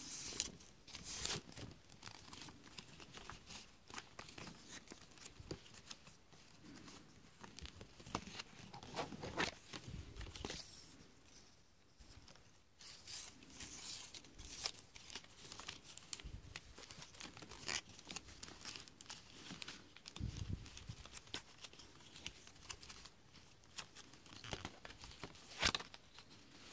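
Palm leaf strips rustling and crinkling as they are folded and pulled through a woven palm pineapple by hand, in faint, irregular crackles and scrapes, with a soft bump about two-thirds of the way through.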